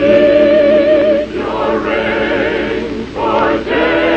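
Chorus of voices singing a musical number, holding notes with vibrato, briefly breaking off about a third of the way in and again near the three-quarter mark.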